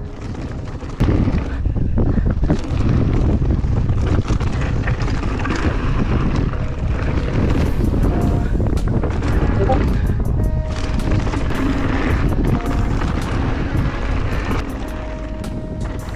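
Riding noise from a 2016 Giant Reign mountain bike descending a rocky dirt trail: wind rushing over the camera microphone, tyres on loose dirt and gravel, and sharp knocks from the bike, louder from about a second in. Background music runs underneath.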